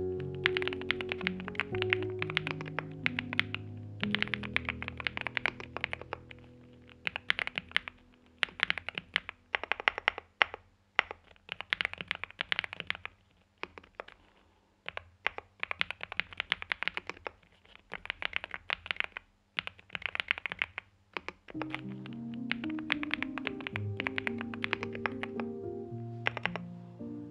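Typing on a NuPhy Gem80 mechanical keyboard with an FR4 plate in silicone sock gasket mount, NuPhy Mint switches and double-shot PBT mSA keycaps: rapid runs of keystrokes in bursts with short pauses between them. Background music with low sustained notes plays under it, fading out in the middle and coming back near the end.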